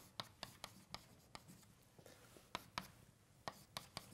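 Chalk writing on a blackboard: faint, irregular taps and short strokes of the chalk as words are written.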